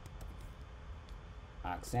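A few faint computer keyboard key clicks over a low steady hum, then a man's voice starts near the end.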